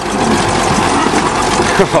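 Bulldozer's diesel engine running steadily under load.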